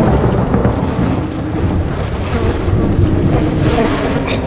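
Storm sound effect in a hip-hop track's instrumental break: steady rumbling thunder with a rain-like hiss, with no clear beat.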